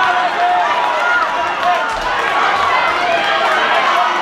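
Boxing crowd in a packed hall shouting and calling out over a steady din of many voices during a bout.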